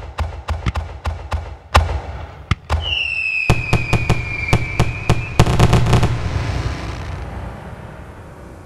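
Fireworks display: a rapid string of bangs, about three a second, then a long whistle falling slightly in pitch, with more bangs over it. A quick dense burst of bangs follows about six seconds in, then the sound fades to a rumble near the end.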